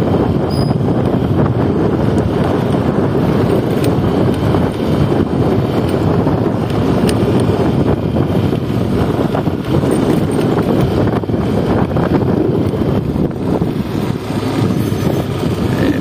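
A motorcycle running steadily at riding speed, with wind rushing over the microphone.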